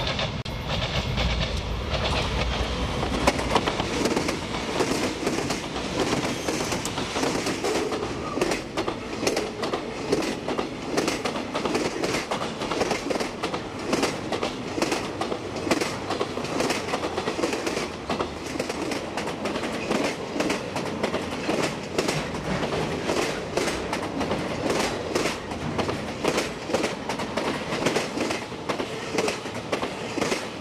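CSX diesel freight train passing close by. Its locomotives rumble past in the first few seconds, then a long string of intermodal cars rolls by with continuous rapid clicking of wheels over rail joints.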